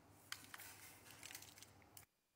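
Faint light ticks and rustles of ground spice mix being shaken from a small glass bowl onto a raw fish steak, at a very low level.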